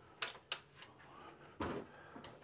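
Flexible TH3D magnetic build-plate sheet being handled and flipped over: a few light clicks and taps in the first half, then a brief duller sound near the end.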